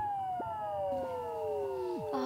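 Edited-in comic sound effect: several whistle-like tones slide slowly downward together, one dropping away sharply near the end.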